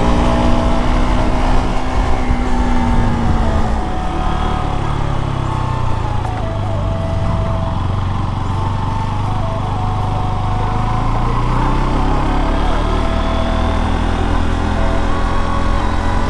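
KTM RC 200 single-cylinder motorcycle engine heard from the rider's seat over wind and road noise. Its note falls over the first few seconds as the bike slows, then runs low and steady at slow riding speed.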